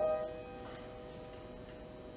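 A grand piano chord struck once and left to ring, slowly dying away, with a few faint clicks about a second apart.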